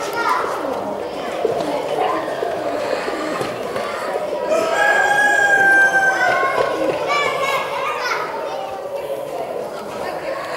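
A rooster crowing: one long, drawn-out crow about four and a half seconds in, with a shorter call after it, over the steady chatter of many people and children in a large hall.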